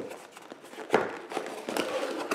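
Cardboard product box handled on a stone countertop: a click at the start, a sharp knock about a second in, then lighter taps and scuffs as the lid flap is lifted.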